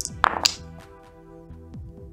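Dice thrown into a round wooden dice tray: a few sharp clacks in the first half-second, then lighter rattles as they settle.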